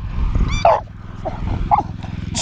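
Beagle giving a high yip about half a second in, then two short whines, while held back on its leash: the excited, impatient noise of a hound eager to chase the lure.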